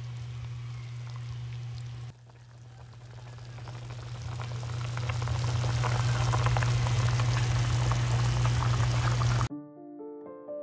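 A pot of chicken soup (tinolang manok) simmering on the stove, bubbling with many small crackling pops over a steady low hum; it grows louder through the first half. Piano music takes over abruptly near the end.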